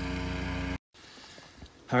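A small engine running steadily at a constant pitch, cut off suddenly just under a second in; then faint outdoor quiet with a couple of light knocks.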